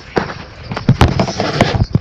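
Irregular knocks and thumps of bouncing on a trampoline, the mat and steel springs jolting a handheld recording device, loudest about a second in.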